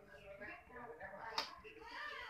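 Faint background voices, with one sharp click about one and a half seconds in.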